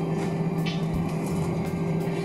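Steady engine drone inside the cabin of an Airbus A320-family jet taxiing after landing: two constant hum tones over an even rumble.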